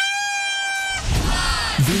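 A party horn blown in one steady note for about a second, then music and cheering come in.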